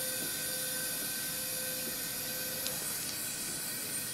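Steady suction hiss of a surgical smoke evacuator nozzle held at the electrosurgery site. A faint steady tone runs alongside it and stops about three seconds in.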